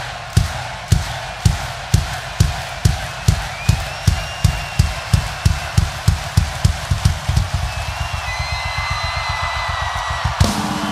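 Bass drum struck in a steady beat of about two a second, speeding up into a fast roll, over an arena crowd cheering and whistling.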